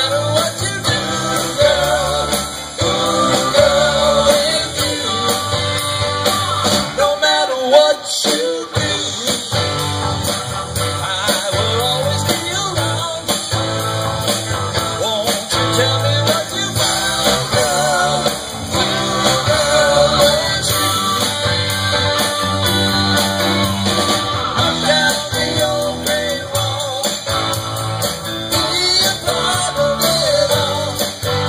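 A small rock band playing live, with guitars, keyboard and drums and a singer's voice over them. There is a brief break in the low end about eight seconds in.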